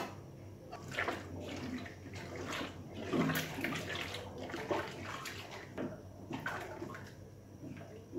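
Wooden paddle stirring a thin, milky rice-flour mixture in a large aluminium pot. The liquid sloshes and splashes in irregular strokes.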